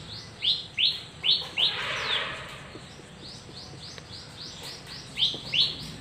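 A bird chirping repeatedly: short notes, each sliding down in pitch, about three a second. They are loudest in the first couple of seconds and again near the end.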